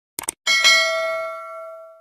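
Subscribe-button sound effect: a quick mouse click, then a bright notification-bell chime that rings and fades away over about a second and a half.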